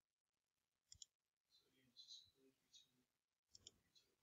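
Near silence with faint computer mouse clicks: a quick pair about a second in and another pair near the end.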